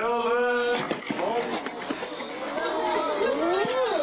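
A man's voice talking indistinctly: one held vocal sound at the start, then talk that rises and falls in pitch, with no clear words.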